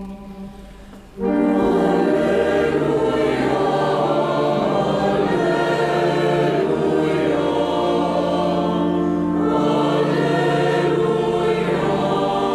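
A church choir sings a hymn in sustained full chords. It comes in loudly about a second in, after a quieter moment.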